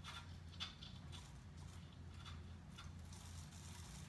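Faint, scattered light clicks and small handling noises over a steady low hum.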